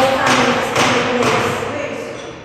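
A woman speaking into a podium microphone, her voice fading near the end, with dull thumps about every half second.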